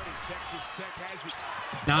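College basketball game audio from a TV broadcast, at low volume: a ball bouncing on the hardwood court as a play is run, with faint voices underneath.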